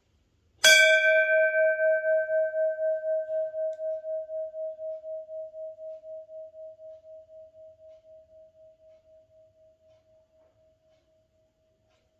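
Large hanging brass temple bell struck once, its clear tone ringing on and dying away slowly over about ten seconds with a steady waver of about four pulses a second.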